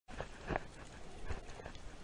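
Muffled underwater sound picked up through a waterproof action-camera housing: a low wash of moving water with a few irregular knocks and thuds, the loudest about half a second in.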